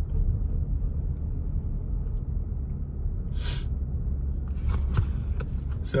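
Low, steady rumble of a car driving slowly along a residential street, heard from inside the cabin, with a brief hiss about halfway through.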